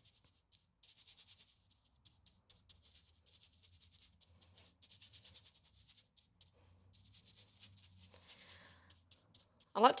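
Paintbrush working paint onto paper: faint, quick scratchy brush strokes that come in short runs of dabs and sweeps, with brief pauses between them.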